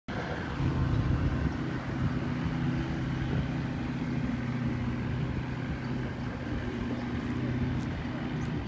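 Seaplane engine and propeller running with a steady, even low hum.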